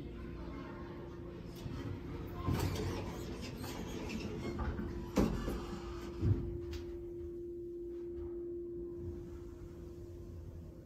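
ThyssenKrupp hydraulic elevator's sliding doors closing, with a stretch of rattling and a few thuds between about two and a half and six and a half seconds in. A steady hum runs under it and grows a little stronger once the doors are shut, as the car starts down.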